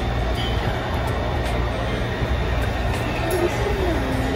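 A steady low hum or rumble, like running machinery, with faint voices in the background.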